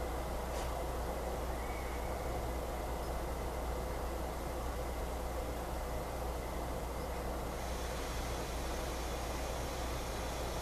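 Steady background noise with a constant low hum and hiss, unchanging throughout, with no distinct event.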